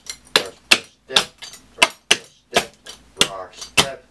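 Clogging taps on the soles of dance shoes striking a plywood floor: a run of sharp clicks, two or three a second, as the dancer steps a right-foot triple-step sequence of repeated steps ending in a rock step.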